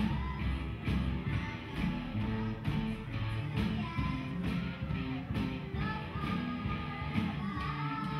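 Live children's rock band playing: electric guitars, bass and drums with a steady beat, and a girl's singing voice coming in more strongly near the end.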